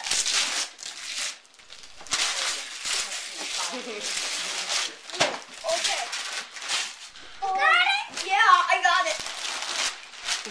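Wrapping paper being torn and crumpled in repeated bursts as gifts are unwrapped. Starting about three quarters of the way in, a child lets out excited, rising vocal sounds.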